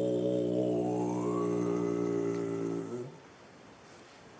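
A Tibetan Buddhist monk's deep chanting voice holds one long, steady low note, its vowel opening and brightening about a second in, and stops about three seconds in.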